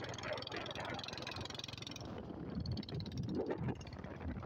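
Two-wheeler riding along a road: steady engine, wind and road noise. The high hiss drops away about halfway through.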